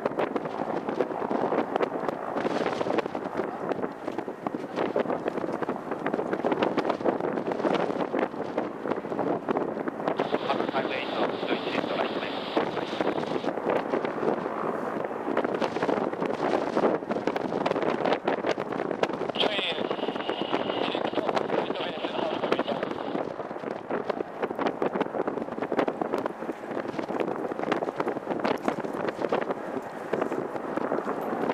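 Indistinct chatter of several voices with wind on the microphone. A high-pitched whine comes and goes twice.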